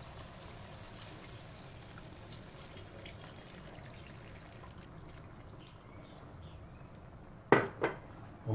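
Milk being poured into rice cooking in a cast iron pan: a faint, steady pouring trickle. Near the end, two sharp knocks about half a second apart.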